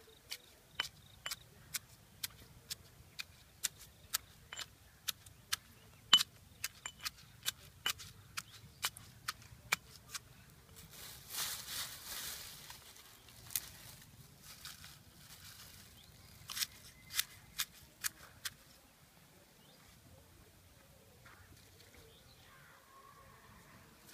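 Wooden pestle pounding mahogany seeds in a small clay mortar: sharp knocks about twice a second, with a rustling stretch in the middle and a few more strokes before it stops about three-quarters of the way through.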